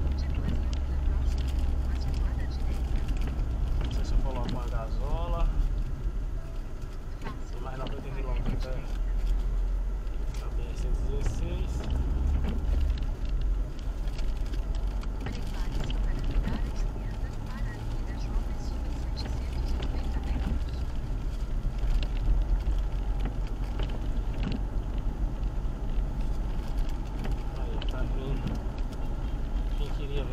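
Steady low rumble of a car's engine and tyres heard from inside the cabin while driving on a rain-wet road. A voice is heard briefly about four seconds in and again about eight seconds in.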